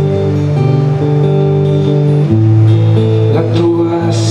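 Solo acoustic guitar played in an instrumental passage between sung lines, sustained chords ringing and changing a few times.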